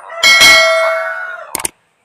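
Subscribe-button animation sound effects: a mouse click sets off a bright bell ding that rings and fades over about a second and a half. Two more quick clicks follow near the end.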